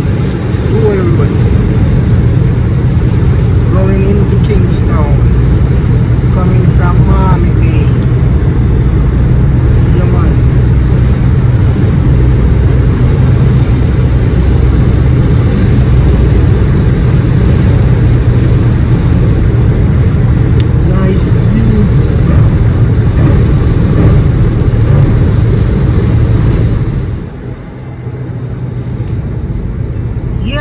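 Car cabin road noise at highway speed: a steady low drone of tyres and engine that drops in level about three seconds before the end.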